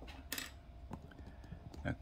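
A short, crisp crackle of a glossy catalogue page being handled, followed by a fainter tick just under a second in.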